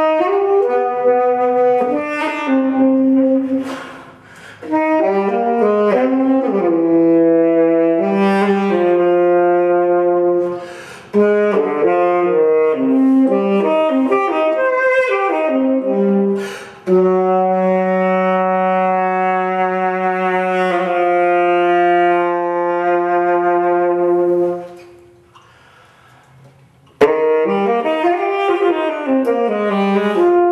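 Solo tenor saxophone playing a jazzy rendition of an etude in short phrases separated by breaths. In the second half it holds one long low note, then rests for about two seconds before starting a new phrase near the end.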